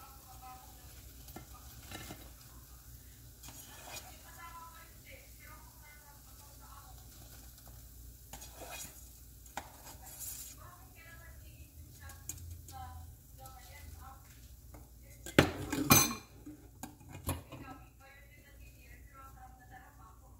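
Metal tongs and a wire-mesh strainer clinking and scraping against a metal pot while fried okra is lifted out of hot oil, with a light sizzle from the oil. A few much louder metal knocks come about three-quarters of the way through.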